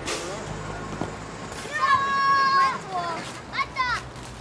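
Children shouting and calling out while playing, with a long high-pitched shout about two seconds in and two short ones near the end.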